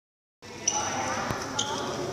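Badminton players moving and playing on an indoor court: short high squeaks from shoes on the court floor and a single sharp knock, over faint voices.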